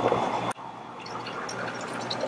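Blue frozen slush being dispensed from a slush machine's tap into a plastic cup, sounding like diarrhea. About half a second in, the level drops suddenly, then the pour goes on at a lower level.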